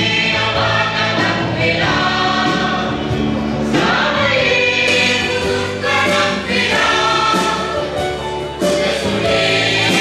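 Mixed choir of women's and men's voices singing a sacred song in long, held phrases.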